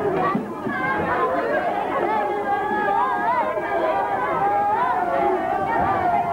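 Several people chatting and talking over one another, with no single voice standing out clearly.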